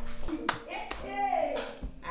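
A few sharp hand claps in the first second, from a woman clapping in delight, mixed with her excited voice.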